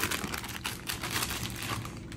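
Plastic Takis chip bag crinkling as it is handled, a steady run of small crackles.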